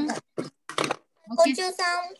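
A high-pitched voice speaking in short bursts, with brief gaps between them.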